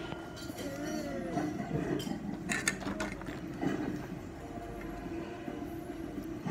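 A few sharp clicks of a metal fork against a ceramic plate, bunched about halfway through, over a steady low hum.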